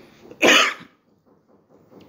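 A man coughs once, briefly, about half a second in.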